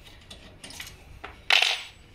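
A metal spanner clinking on the brake-hose fitting of a hydraulic disc-brake caliper: a few light metallic taps, then one louder, bright clink about one and a half seconds in.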